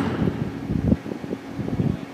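Wind buffeting the microphone in irregular low gusts, with a faint steady hum coming in about halfway.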